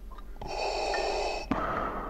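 Darth Vader's respirator breathing sound effect, turned down low: one hissing breath lasting about a second, then the next breath starting about a second and a half in.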